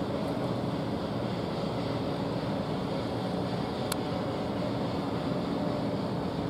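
Steady low rumble and hum of a docked cruise ship's machinery running, with one faint click about four seconds in.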